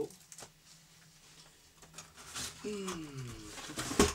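Light handling sounds of unboxing on a desk: faint clicks and a brief rustle. These are followed by a short low sound that falls in pitch, and the passage ends with a sharp knock.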